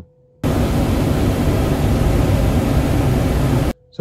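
A steady, loud rushing noise like static, with no tone in it, that cuts in abruptly about half a second in and cuts off just as abruptly shortly before the end.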